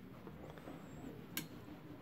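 A metal ladle gives a single short click against a cooking pot, over a faint background hiss.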